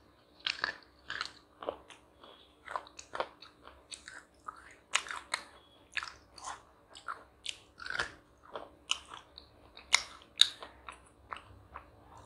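A person biting and chewing crunchy chocolate close to the microphone: a string of sharp, irregular crunches, two or three a second, loudest about ten seconds in.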